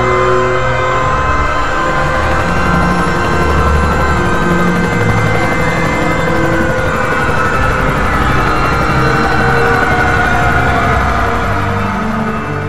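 Loud, dense dramatic soundtrack music: held high tones over low notes that shift every second or so, buried in a thick rumbling noise, with slowly gliding tones near the end.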